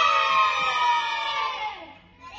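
A group of children shouting a cheer together in one long, drawn-out yell that sags slowly in pitch and fades out near the end.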